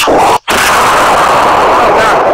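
A loud explosion sound effect. After a brief cut just before half a second in, a long, dense blast runs on without letting up.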